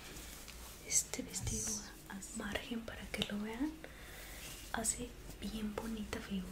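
A woman speaking softly, close to the microphone, with a brief rustle and low thump about a second in.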